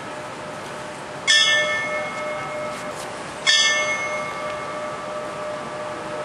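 Brass hand bell on a stand struck twice, about two seconds apart. Each strike is a bright ring that hangs on and slowly fades over the hum of earlier strikes, tolled in tribute to the fallen.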